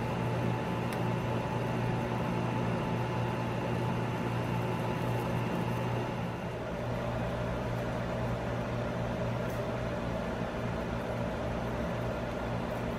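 A steady machine hum with a low drone and a few faint steady tones. The tones shift slightly about six and a half seconds in.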